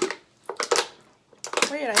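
Laughter, with short breathy bursts, then a voice starting to speak near the end.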